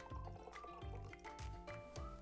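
Light background music with a steady beat, over the faint sound of water being poured from a glass flask into a tall glass packed with jelly marbles (water beads).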